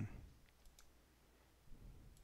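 A few faint clicks from computer input during folder creation, against near-silent room tone.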